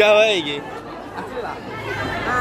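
People talking: one voice loud in the first half second, then quieter chatter of several voices.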